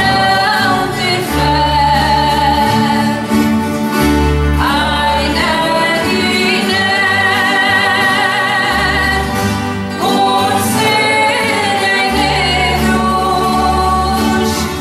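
A woman singing a traditional Azorean song, her voice wavering with vibrato, over an orchestra of strummed violas da terra (Azorean steel-string folk guitars) and guitars, with a low bass line moving under the chords.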